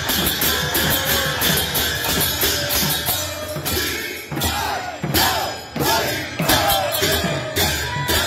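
Kirtan music: voices chanting together over a drum, with bright metallic hand-cymbal strokes keeping a steady beat.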